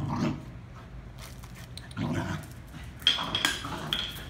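A corgi making short, rough play growls in three bursts while it runs about in zoomies, the last burst about three seconds in with a brief high squeak.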